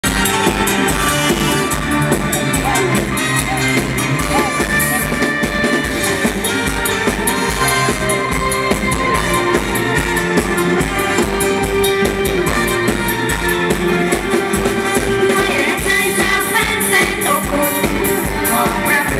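Live Isan mor lam band playing an upbeat toei-style song, with drum kit and percussion keeping a steady beat.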